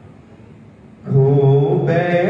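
A man singing a ghazal couplet in a slow, drawn-out melodic style, holding long notes, with no instruments. His voice dies away, there is a hush of about a second, then he comes back in on another long held note.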